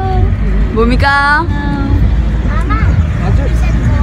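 Steady low rumble of a van's engine and tyres heard inside the cabin while it drives, under people's voices.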